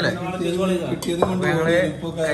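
Metal plates and a metal pot clinking and clattering on a table, with a sharp clink about a second in, under men's voices.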